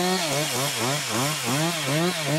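Chainsaw felling larch trees, its engine running at high speed with the pitch dipping and recovering about four times a second.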